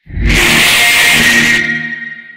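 A logo animation's sound blown out by extreme distortion: a loud, clipped, noisy blast with faint steady tones buried in it. It starts suddenly, holds for about a second and a half, then fades away.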